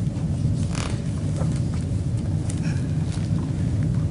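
Steady low rumble, with a soft rustle about a second in as a picture book's page is turned.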